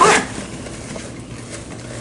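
Faint rustling of a fabric insulated cooler bag being handled and opened, with no distinct clicks or strokes.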